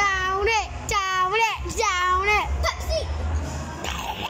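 A child's high voice singing a short wordless tune in three drawn-out phrases that dip and rise in pitch, with a shorter fourth note about three seconds in.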